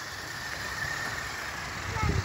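Taiyo Iron Claw RC truck's small electric motor whining faintly and steadily as it drives through a shallow puddle, its tyres splashing water.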